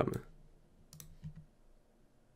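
A computer mouse click about a second in, followed by a couple of fainter clicks.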